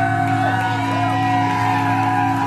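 A live band plays a droning intro: low notes are held steadily under higher tones that slide and waver in pitch. A shout or whoop rises over it.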